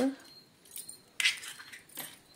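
An egg being broken open by hand over a steel plate, with a short jingle of glass bangles about a second in.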